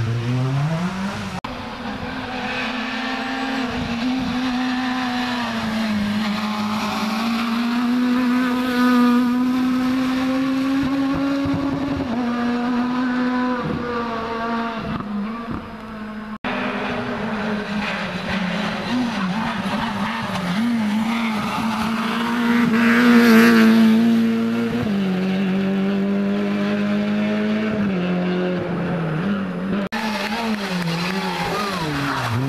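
Rally car engines driven hard on a closed stage, the note climbing and dropping with each gear change. After a cut about halfway through, another car approaches, with a brief louder burst of noise about seven seconds later.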